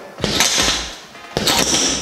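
Two short, sharp exhalations hissed out through the teeth, the second beginning about a second and a half in: a boxer's breath out timed with each jab.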